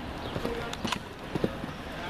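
Hoofbeats of a show-jumping horse cantering on sand arena footing: a quick, uneven series of sharp thuds as it approaches a jump.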